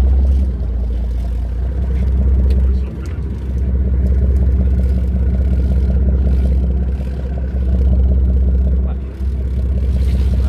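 Boat engine running steadily with a deep low drone, dipping briefly about three seconds in and again near the end.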